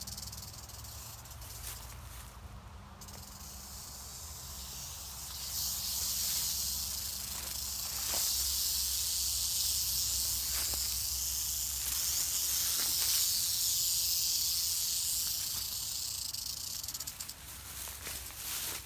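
Western diamondback rattlesnake rattling: a continuous high buzz that sets in a few seconds in, grows louder and holds, then fades near the end. It is the snake's warning that something is too close and it is ready to bite.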